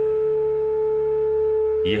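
A steady, unchanging held tone, a sustained drone in the background soundtrack, with a fainter higher tone above it; a man's narrating voice comes back in just at the end.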